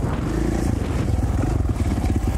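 KTM 450 XC-F's single-cylinder four-stroke engine running steadily under way on a dirt trail, with quick even firing pulses.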